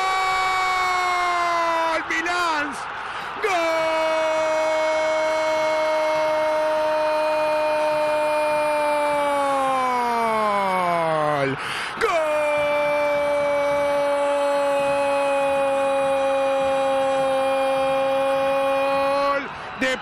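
A Spanish-speaking football radio commentator's drawn-out goal cry, 'goool', held on one steady note for several seconds and sliding down in pitch as his breath runs out. After a quick breath he shouts a second long 'gol', held for about seven seconds, and then goes on with 'de Peñarol'.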